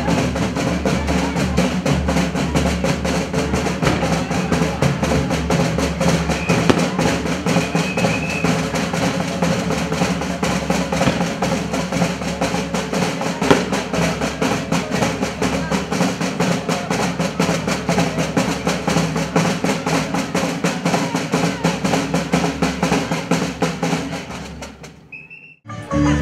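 Marching bass drums and snare drums of a street procession band beating a rapid, continuous rhythm with rolls. The drumming fades out and stops about a second before the end.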